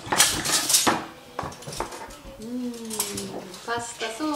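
Metal fork and knife clinking and scraping against a ceramic plate of pasta: a quick run of sharp clinks in the first second, then a few scattered taps.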